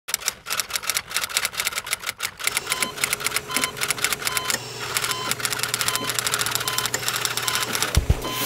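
Rapid, even clicking like keyboard or typewriter typing, with short repeated beeps and a steady low hum joining about halfway through.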